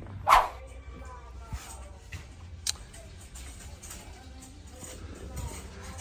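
Shop ambience: a steady low hum under faint background music, with one short loud sound about a third of a second in and a sharp click a little before halfway.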